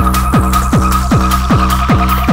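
Fast acidcore electronic music: a pounding kick drum about three beats a second, each beat dropping in pitch, under a steady high held tone and sweeping high-end noise.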